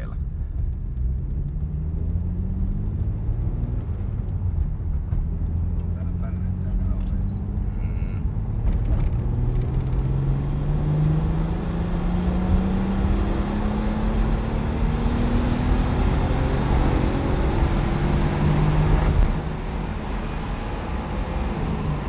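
Turbocharged BMW M50 straight-six heard from inside the car's bare cabin, pulling in gear under part throttle held near zero boost. The revs rise briefly, drop back, then climb slowly and steadily for about fifteen seconds, getting a little louder, until the engine note falls away near the end as the throttle is lifted.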